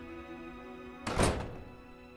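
A heavy front door shutting with a single loud thud about a second in, over soft music of steady held notes.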